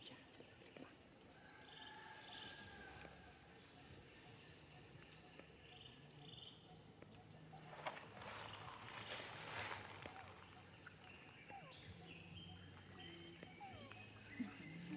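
Near silence: faint outdoor ambience with scattered faint bird chirps and a short burst of rustling noise about eight seconds in.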